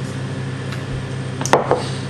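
A steady low hum in a lecture room, with one sharp click about one and a half seconds in.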